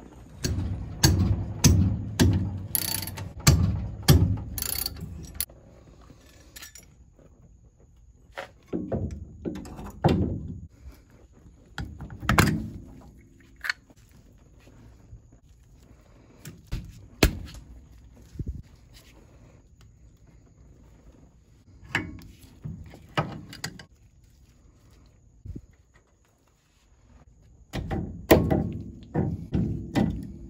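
Irregular clicks, knocks and metallic clinks of hand work at a front disc brake hub: pliers pulling the cotter pin and the castle-nut retainer and spindle nut being taken off the spindle. A denser run of low bumps fills the first few seconds, and a faint steady high tone sits underneath.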